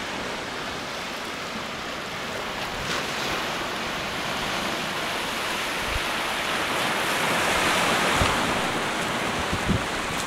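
Small waves washing in and draining among rocks and pebbles at the water's edge, swelling louder near the end, with a few low gusts of wind on the microphone.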